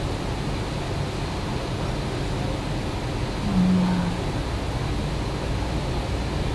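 Steady low rumble of room noise, with one brief low hum about three and a half seconds in.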